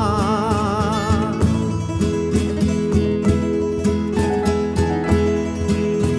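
Valencian traditional song (riberenca) played live. A male voice holds an ornamented note with wide vibrato, ending about a second and a half in. Then the band carries on without the voice: acoustic guitar and other plucked strings play a steady rhythmic figure over bass.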